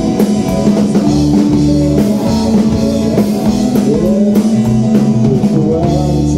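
Live rock band playing: two electric guitars over a steady drum-kit beat, with bent guitar notes.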